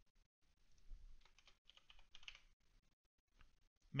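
Faint computer keyboard typing: short runs of keystrokes with gaps between them.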